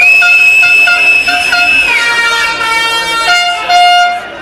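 Loud horn blasts: one long high tone held for about two seconds over a run of short, lower toots, then several tones sounding together near the end.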